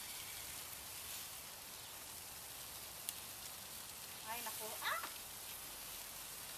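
Meat sizzling on a charcoal kettle grill, a steady hiss, with a single sharp click about three seconds in.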